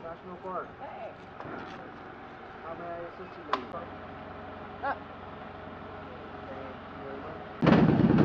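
Motorcycles idling with a low steady hum under faint talk, with two brief sharp sounds in the middle. Near the end a Harley-Davidson Road King's V-twin with loud pipes comes in suddenly and loudly as the bike pulls away.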